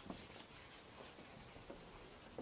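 Faint rubbing of a handheld whiteboard eraser wiped across a whiteboard, with a brief light knock as it meets the board at the start.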